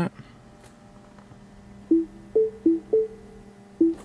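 Electronic warning chime in a 2010 Mini Cooper S cabin, ignition on: short two-note tones alternating low and higher, starting about two seconds in, over a faint steady hum.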